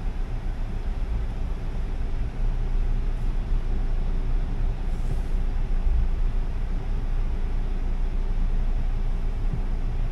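Steady low rumble inside a car's cabin, the engine running while the car idles and creeps along in slow traffic.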